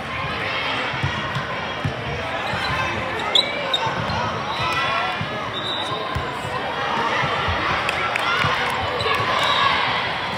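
Volleyball rally in a large sports hall: a few sharp slaps of the ball being passed and hit over a steady din of many overlapping voices echoing around the hall.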